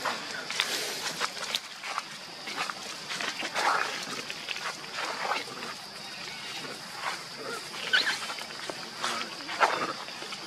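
Long-tailed macaques moving over dry leaf litter, with scattered short rustles and crackles and a few brief monkey calls, including a short rising squeak about eight seconds in. A steady high-pitched hum runs underneath.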